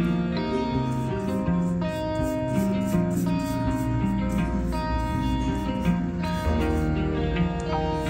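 Background instrumental music with plucked guitar notes.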